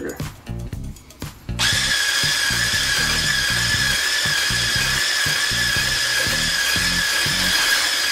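Cordless Cuisinart hand blender with a whisk attachment switching on about a second and a half in and running at a steady high whine, whipping egg whites in a glass bowl until they turn frothy.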